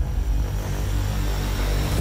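A deep, steady low rumble with no speech.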